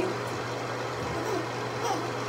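A low steady hum, with faint voice sounds about a second in.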